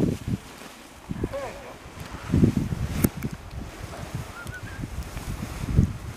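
Wind buffeting the microphone in irregular low gusts, strongest about two and a half seconds in and again near the end, with faint voices in the background.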